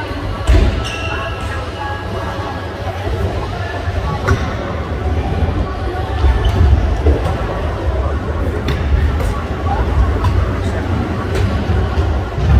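Skateboard wheels rolling over wooden ramps, a steady low rumble, with a few sharp clacks and thuds of boards on the wood, one about half a second in and others around four and nine seconds. Indistinct voices are heard in the background.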